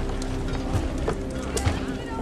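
Soundtrack of a TV drama scene: background music holding a steady chord over a low rumble, with scattered knocks and clatter from a busy camp.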